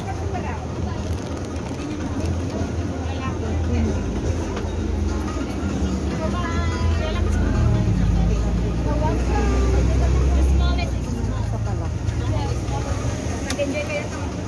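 Indistinct chatter of shoppers in a busy clothing store over a low rumble that swells in the middle and eases off near the end.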